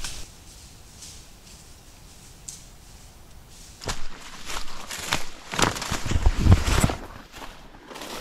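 Footsteps crunching through dry leaf litter on a forest trail. They start about four seconds in after a quiet stretch, with a few heavier low thuds among the steps.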